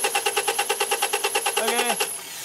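A 1999 Honda Accord's 2.3-litre four-cylinder engine being cranked by its starter, an even rhythm of about a dozen compression pulses a second under a high steady starter whine, stopping near the end without the engine catching. The no-start is down to a failing PGM-FI main relay with a cracked solder joint, which cuts power to the fuel pump.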